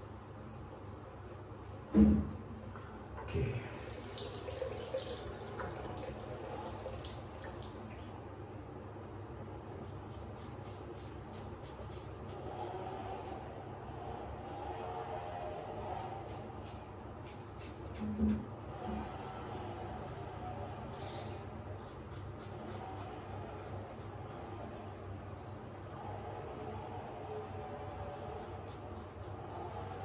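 Slant safety razor scraping through lather on the face in short strokes, over a chainsaw running outside. Two sharp knocks stand out, about two seconds in and about eighteen seconds in, and a few seconds of hiss like running water come about four seconds in.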